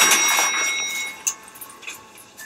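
Elevator arrival chime: a bell-like ding with several high ringing tones that fade out over about a second.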